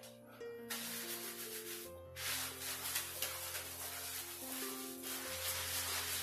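Soft background music of held notes stepping from pitch to pitch, over the wet rubbing of hands lathering shampoo into soaked hair, starting about a second in.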